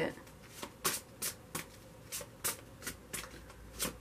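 A deck of large tarot cards being shuffled by hand: a quick, uneven run of soft card slaps, about three a second.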